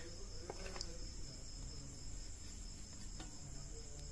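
A few faint clicks of a steel plate against a steel vessel as ground spice powder is tipped in, over a steady high-pitched drone.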